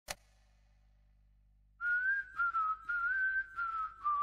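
A brief click, then after about two seconds of near silence a person starts whistling a slow, slightly wavering tune in a few short breathy phrases.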